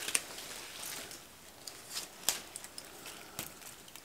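Faint rustling and a few light, sharp clicks from flower stems and foliage being handled during flower arranging, the clearest click a little past the middle.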